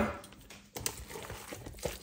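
Silicone spatula stirring mayonnaise-dressed crab salad in a plastic container: quiet, irregular sounds with a few light clicks.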